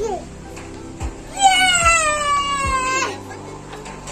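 A single drawn-out, high-pitched cry starts about a second and a half in and lasts about a second and a half, sliding slowly down in pitch before cutting off suddenly. Low thumps come about once a second underneath it.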